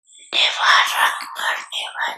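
Speech: a woman talking into a microphone, the words indistinct, starting shortly after a brief pause.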